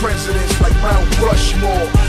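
Hip hop music: a rapped vocal over a heavy bass and drum beat.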